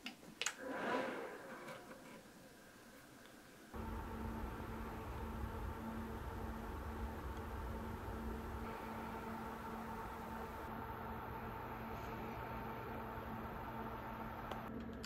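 A click as the HP Z820 workstation's power button is pressed, followed by a brief whir. From about four seconds in, the workstation's fans run steadily, a constant whir with a low hum.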